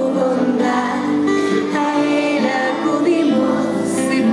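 A group of schoolchildren and women singing a hymn together, voices held on long sung notes.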